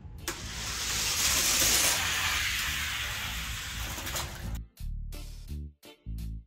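Six die-cast Hot Wheels cars rolling at speed down a long orange plastic drag track, a continuous rushing rattle that begins just after a click as the start gate drops, swells over the first couple of seconds, and fades out about four seconds in. A hip-hop beat runs underneath and takes over near the end.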